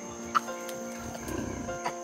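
Background music with held chords. About a second and a half in comes a short, low grunt from a mountain gorilla, with a couple of sharp clicks around it.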